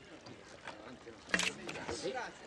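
Water from a fountain spout pouring and splashing steadily, with a man saying "Yes" partway through.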